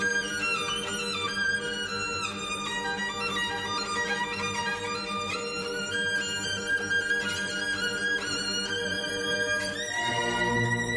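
Solo violin playing a melodic line that moves in sliding steps, falling and later rising, over sustained notes from a string orchestra.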